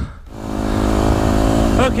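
Yamaha YZ250F dirt bike's single-cylinder four-stroke engine running at a steady speed while riding. It comes in about a quarter of a second in, after a brief quiet moment.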